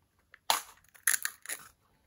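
Zuru Disney Mini Brands plastic capsule and its printed wrapper being pulled open by hand: a few short, sharp crackles and snaps, the first about half a second in.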